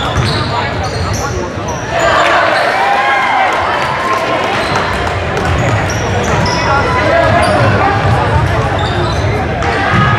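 Basketball play on a hardwood gym floor: sneakers squeaking in short chirps and the ball bouncing. Players' voices call out from about two seconds in.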